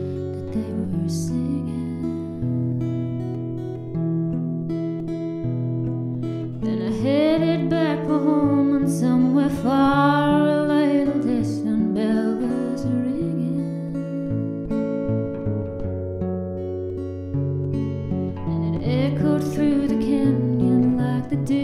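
Fingerpicked steel-string acoustic guitar playing a slow ballad. A woman's voice sings a long line in the middle, from about seven to twelve seconds in, and comes in again near the end.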